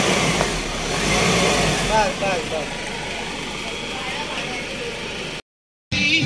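Car engine running just after being started, with a low rumble that is louder for the first two seconds and then settles to a steady run. Brief voices come in around two seconds in, and the sound cuts off shortly before the end.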